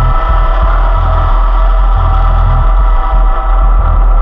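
Live modular synthesizer music: a sustained chord of held drone tones over a deep bass note that swells in and out in uneven pulses.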